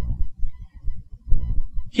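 Deep bass of a background soundtrack, pulsing unevenly with no melody above it.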